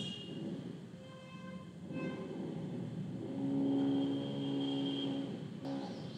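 A motor vehicle running in the background, with steady pitched tones that get louder for about two seconds past the middle.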